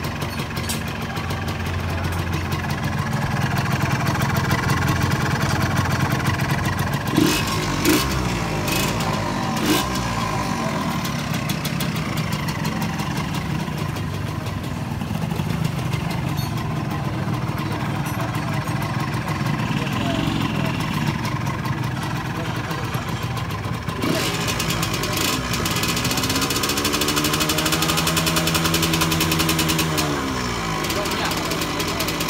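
A Yamaha motorcycle engine running steadily, then revved up and down several times over the last few seconds. A few sharp clicks come between about seven and ten seconds in.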